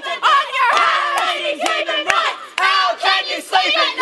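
A crowd of voices shouting and calling out together, with a few sharp hand claps among them.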